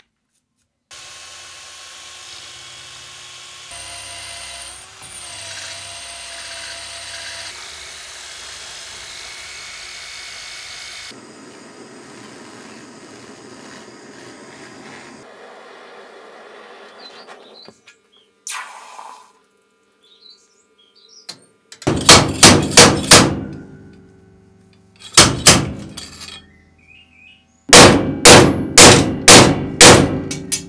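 A drill boring into a brass block held in a vise, then a handheld butane torch hissing as it heats the brass guard. Near the end come three bursts of quick, ringing hammer blows driving the brass guard onto the steel tang of the sword.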